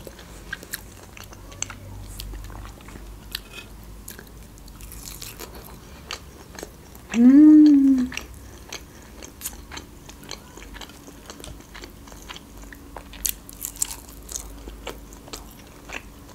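Close-up chewing of grilled kebab meat: soft wet mouth sounds with many small clicks. About seven seconds in comes a short, loud hummed "mmm" that rises and falls in pitch.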